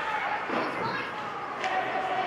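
Ice hockey game sounds in an arena: spectators' voices calling out over the hiss of skates on the ice, with one sharp click of stick or puck about three-quarters of the way through, in a reverberant rink.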